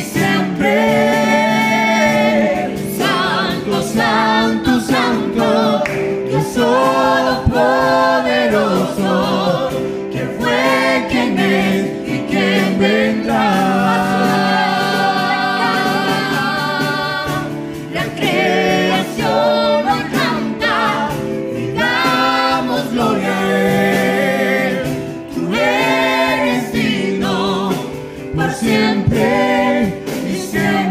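A small worship band performs a gospel praise song: several male and female voices sing together in harmony over electric keyboard and cajón, with a long held sung passage near the middle.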